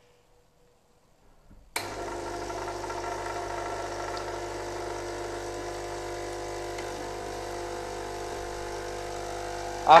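Vibratory water pump of a Lelit PL81T espresso machine starting suddenly about two seconds in, after a near-silent pause, and then running with a steady, even hum as the machine powers back up.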